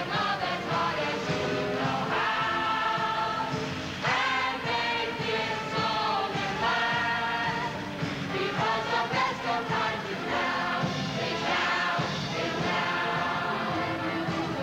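A mixed chorus of men and women singing a show tune together, continuously and at a steady level.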